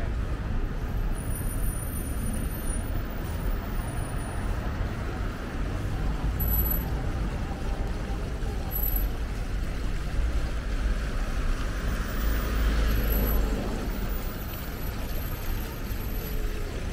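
Street traffic: a steady low rumble of cars and buses passing on a city street, swelling as a vehicle goes by about twelve seconds in.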